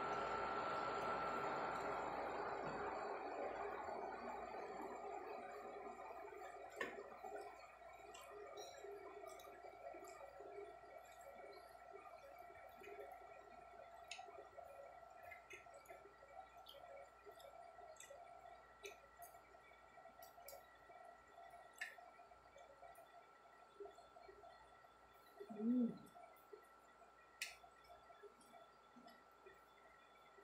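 Quiet mealtime sounds: a metal spoon and fork clinking and scraping against a ceramic plate in many small, irregular ticks while fried chicken and rice are eaten. About 26 s in there is one short, low voiced sound like a hummed "mm", the loudest moment.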